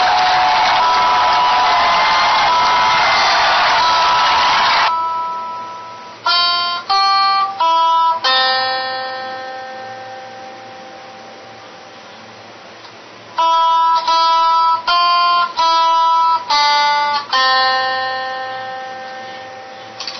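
After about five seconds of loud, dense music, a guitar plays a single-note melody in two short phrases of plucked notes. The last note of each phrase is left ringing and slowly dies away.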